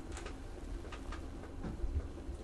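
A quiet pause: a steady low rumble of handling noise from a handheld camera, with a few faint soft clicks.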